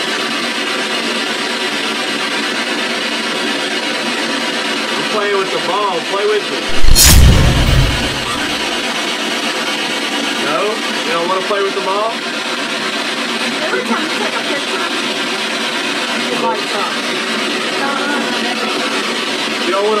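Loud steady hiss with faint voices now and then. About seven seconds in there is a sharp knock with a low rumble after it.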